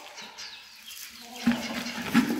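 Chickens calling, with a louder hen call starting about one and a half seconds in after a quieter opening.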